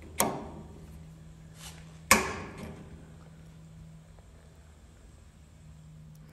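Two sharp clicks about two seconds apart as a gas grill's control knobs are pushed onto their valve stems, the second louder, over a faint steady hum.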